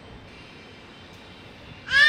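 Low room noise, then near the end a child's high-pitched squeal or whine starts, rising and then falling in pitch.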